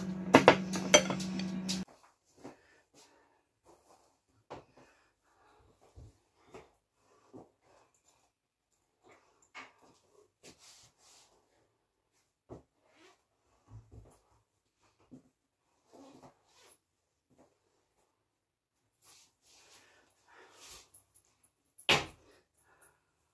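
A voice for about the first two seconds, then faint scattered clicks and rustles, with one sharper click at the very end.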